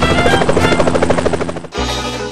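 Helicopter flying overhead, its rotor beating in a fast, even pulse, with music underneath. It cuts off abruptly near the end as brass band music takes over.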